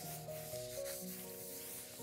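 An Oliso steam iron's soleplate sliding across the paper backing of a fusible web sheet, a continuous dry rubbing hiss. Background music with a melody plays over it.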